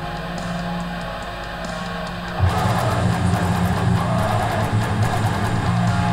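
Distorted Ibanez electric guitar playing a hardcore riff: a held, ringing note, then about two and a half seconds in a louder, low, dense riff starts.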